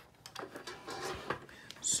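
Faint handling noises: a few light clicks and rustles in a quiet room, with a short breath near the end.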